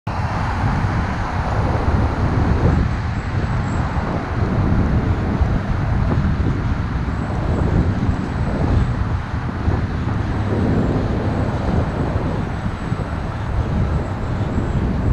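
Steady outdoor road-traffic noise: a continuous roar with a heavy, uneven low rumble and no distinct events.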